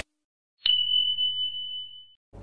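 A single high-pitched notification-bell ding sound effect, struck about two-thirds of a second in and ringing on as one steady tone that slowly fades.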